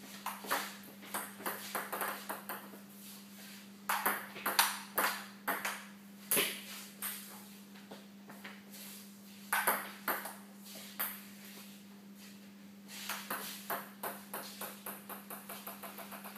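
Table tennis ball clicking back and forth between paddles and table in several short rallies, with brief pauses between them. A steady low hum runs underneath.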